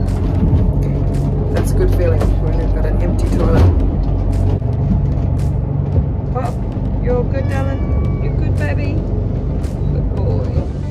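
Motor cruiser's engines droning steadily below deck while underway in rough seas, with scattered knocks and clatters throughout.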